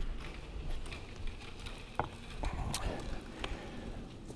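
Footsteps climbing stage steps, with scattered light knocks and handling noise as a man reaches the lectern and sets down a cup.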